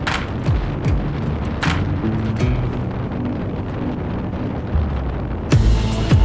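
Music laid over the ride: a deep bass line moving in steps under a kick-drum and snare beat. It grows fuller and louder about five and a half seconds in.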